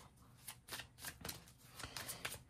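A deck of oracle cards being shuffled by hand: a faint string of short, irregular card flicks and slides.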